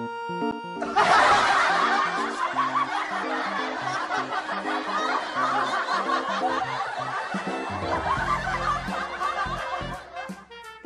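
Laughter from many people breaking out about a second in and going on over background music, which carries a low bass note near the end.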